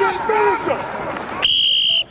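A coach's whistle blown once near the end: a steady, shrill single tone lasting about half a second, cutting off sharply, after a man's shouting.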